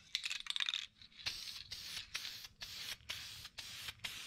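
Aerosol can of Dupli-Color vinyl and fabric spray paint: a brief rattle, then the nozzle hissing in a run of short bursts as a light fog coat is dusted onto a sun-faded fabric seat back.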